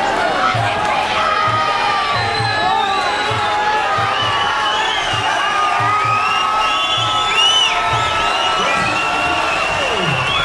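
Fight crowd shouting and cheering, many voices at once and unbroken, in reaction to a knockdown, with low thumps beneath.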